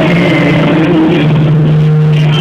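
Loud karaoke music over the bar's sound system, muddy through a phone microphone, with long held low notes.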